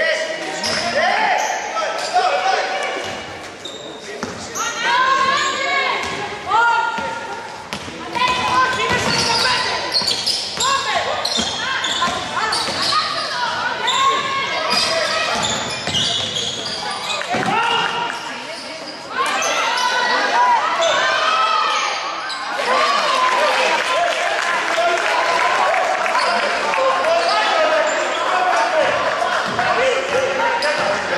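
Indoor basketball game: a basketball bouncing on the hardwood court amid shouting voices of players and benches, echoing in a large gym.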